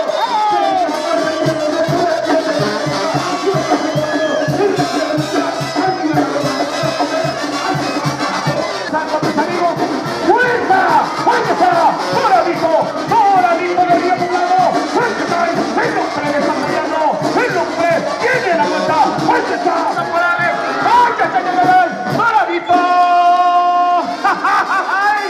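Music with a steady beat under a crowd shouting and cheering, with a long held note near the end.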